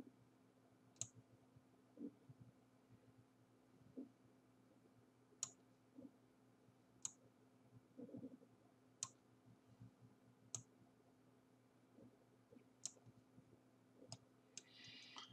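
Computer mouse clicking: about six sharp single clicks spaced one to two seconds apart, with a few soft low knocks between them. A faint steady hum runs underneath.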